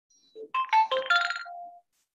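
Short electronic jingle of a ringtone: a quick run of about half a dozen pitched notes, jumping up and down, lasting about a second and a half.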